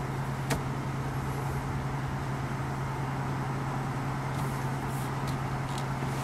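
Steady low hum of the Renault Kadjar's 1.3 TCe petrol engine idling, heard inside the cabin, with a few faint clicks as a finger taps the touchscreen.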